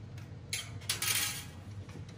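Light metal clinks and scraping as a TIG torch and filler rod are handled and lifted off sheet-metal plates, in two short bursts about half a second and one second in, over a low steady hum.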